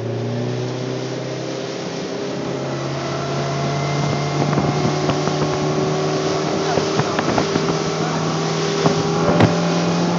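Johnson outboard motor opened up to full throttle: its pitch climbs over the first few seconds as the boat gets up to speed, then holds steady at high revs. Wind buffets the microphone, and irregular knocks come as the hull hits the chop.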